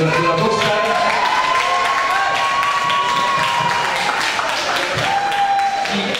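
Audience applauding, with a long held high note sounding over the clapping for the first few seconds and a shorter one near the end.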